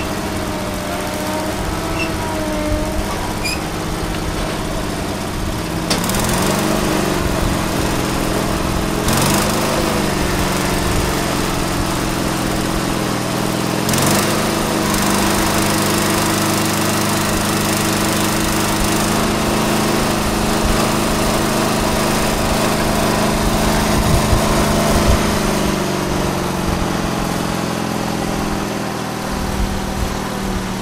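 MTD 995-series garden tractor engine running under load while its Kwik-Way hydraulic front loader lifts a heavy small diesel engine and generator off a trailer, a load that is way too heavy for this tractor. The engine speeds up and gets louder about six seconds in, its pitch shifting several more times as the loader lifts, easing off near the end.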